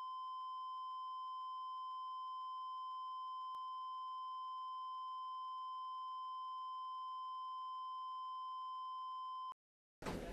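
A single steady, high-pitched electronic beep tone, held unchanged for about ten seconds with nothing else under it, then cut off abruptly into dead silence near the end.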